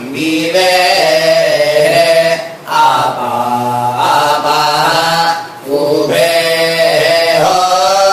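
Melodic chanting by a voice in long held phrases, each a few seconds long, with short breaks between them.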